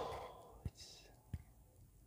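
A man's quiet breathing and mouth noises: an audible breath at the start, then two small clicks.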